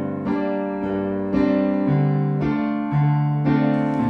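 Piano playing an instrumental passage of sustained chords, a new chord struck about every half second.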